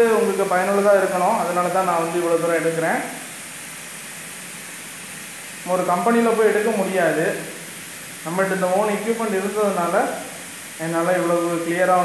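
A man talking in four stretches, probably in Tamil, which the recogniser did not write down. A steady faint hiss fills the pauses between stretches.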